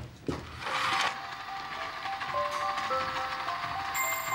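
A small electric toy train set switched on and starting to run, a faint motor whirr under a simple tune of single held notes.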